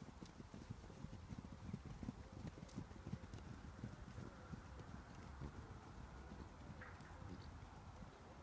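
Hoofbeats of a herd of coloured cob horses and foals trotting over grass: a dull, irregular run of low thuds, thickest in the first three or four seconds and thinner after.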